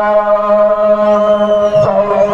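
A Maharashtrian banjo band's amplified instruments holding one steady, sustained chord, with no drum beat yet. A faint high tone rises and falls in the second half.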